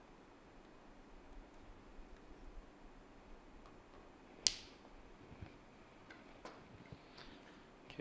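Faint handling of wires and a plastic lever-type wire connector, with a few small scattered clicks and one sharp click about four and a half seconds in as a connector lever is snapped shut.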